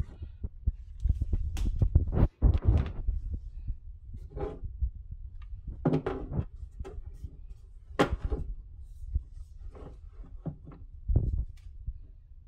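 Handling noise from a bar clamp being released and wooden boards being moved: irregular knocks, clicks and low thumps.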